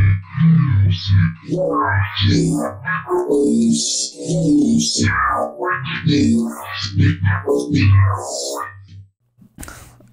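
Metallic synth bass from Harmor, resynthesizing a voice sample through Ableton's Corpus resonator, played in reverse: a run of short low bass notes with sweeping, vowel-like rises and falls in tone, stopping about nine seconds in.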